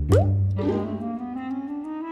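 Cartoon sound effect for a thought bubble popping up: a quick rising plop, then a slow upward-sliding musical tone over a low hum.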